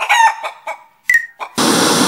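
Cartoon chickens clucking and squawking in short, gliding calls, then a loud burst of noise near the end.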